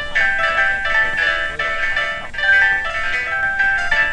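Computer-generated chiming notes from an interactive sound piece that turns movement in a webcam picture into sound. Many short, high notes at changing pitches overlap in a music-box-like jangle with no steady beat.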